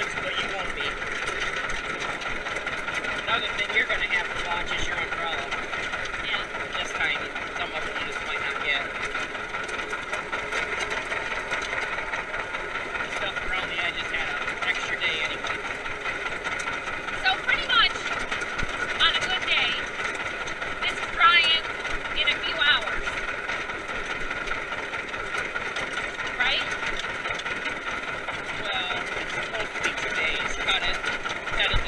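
Vintage John Deere tractor engine running steadily under way, heard from the operator's seat, with indistinct voices partly heard over it near the middle.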